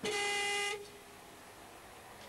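Car horn sounding one short, steady honk that cuts off just under a second in.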